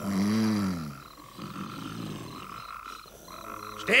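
Cartoon snoring from a sleeping character: one low snore of about a second at the start, its pitch rising then falling, then softer sound, over a steady chirping of night insects.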